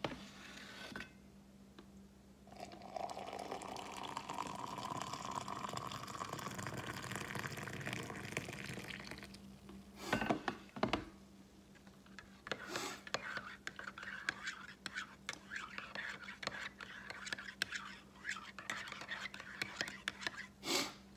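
Coffee poured from a stainless thermal carafe into a ceramic mug for about seven seconds, the pitch of the pour rising as the mug fills. Then a couple of knocks as the carafe is set down, followed by a spoon stirring and clinking in the mug.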